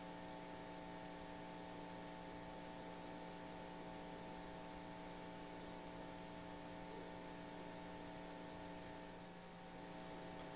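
Steady electrical hum made of several fixed tones over faint hiss, unchanging throughout.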